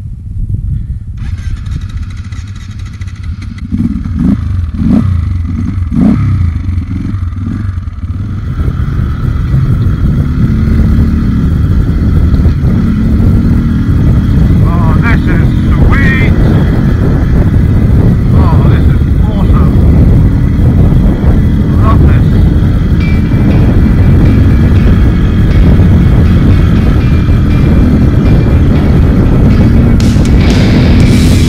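Enduro motorcycle engine, running quietly at first with a few short throttle blips about four to six seconds in, then running steadily and louder under load from about eight seconds in as the bike rides along a stony track.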